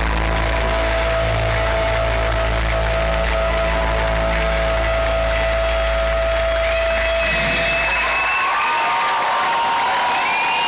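A live rock band's final held chord rings out through the PA and cuts off about eight seconds in. The crowd then cheers and applauds.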